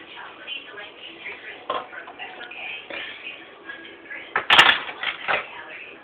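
A few sharp clattering knocks, the loudest cluster about four and a half seconds in, over an indistinct murmur of background voices.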